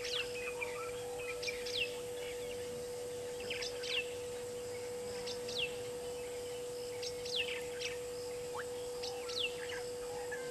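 A bird calling with short, sharp whistles that sweep quickly downward in pitch, often two in quick succession, repeated every second or two. A steady low hum runs underneath.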